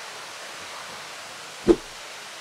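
Steady rushing noise of wind and the ship's wash moving past the hull, with one brief sharp knock about one and a half seconds in.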